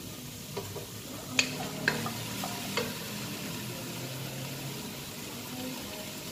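Chicken, broccoli and green beans sizzling in a nonstick pot, with a few sharp knocks and scrapes of a spatula against the pot in the first half.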